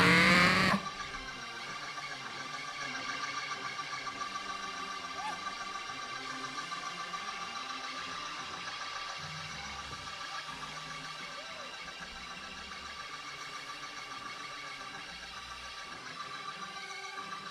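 Hammond organ holding soft, sustained chords with a slight waver, after a shouted phrase from the preacher cuts off about a second in.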